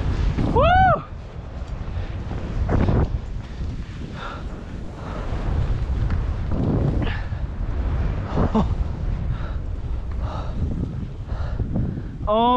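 Wind buffeting the camera microphone while skiing fast through deep powder, a steady low rumble with surges of snow spray as the skis turn, about 3, 7 and 8.5 seconds in. A short whooping shout comes just under a second in.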